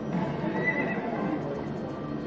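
Slot machine sound effect of a horse neighing in the first second, played by the Centurion game as its chariot symbols land and line up for a small win.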